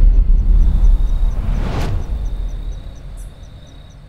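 Trailer sound design on the title card: a deep low boom that slowly dies away, a brief whoosh about two seconds in, and a faint steady ticking about three times a second.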